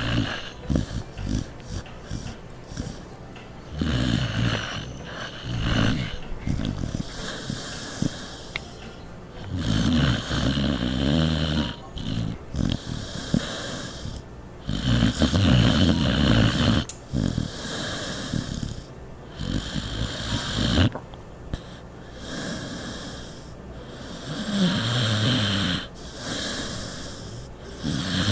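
Mixed-breed dog snoring loudly in its sleep, with long snores recurring every few seconds.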